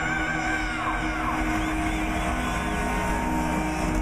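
Heavy metal band playing live, heard from within the crowd: distorted electric guitars held in a sustained drone, with a wavering high guitar note that slides down in pitch about a second in.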